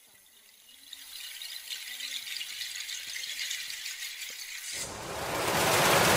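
Audience applauding and cheering, building steadily. Near the end a loud rushing sound comes in suddenly.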